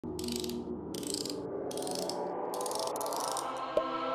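Logo intro music: four short bursts of rattling, shaker-like sound over a rising tone, then a sharp click near the end as sustained chords come in.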